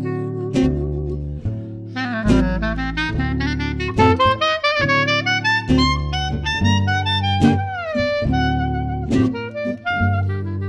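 Small jazz ensemble playing at an easy swing: a clarinet carries the melody, with a downward slide near the eighth second, over upright bass notes and strummed acoustic guitar.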